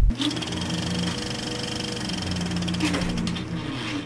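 A steady, rapid mechanical clatter over a low hum, starting just after the opening and fading out shortly before the end.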